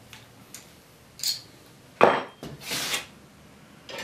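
Metal clinks and knocks as a hand brace is fitted onto a long boring bit and its chuck is worked. The loudest is a sharp clank about two seconds in, followed by a short rattle.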